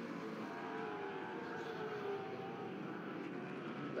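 V8 muscle race cars running at racing speed on a circuit, their engine note steady and slowly falling in pitch over the few seconds.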